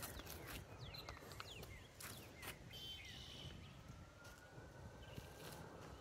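Faint outdoor ambience: a few short bird chirps in the first half, then a distant siren, a faint long tone slowly rising through the second half.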